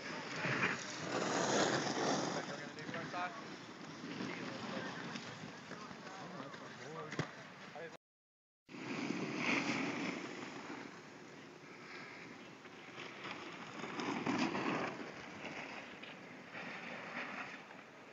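Wind rushing on the microphone, with distant voices of people on the slope. The sound drops out completely for under a second about eight seconds in.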